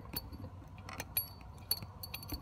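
A thin wire hook tapping against the inside of the metal spark plug tube: a few faint, sharp metallic clicks with brief high ringing.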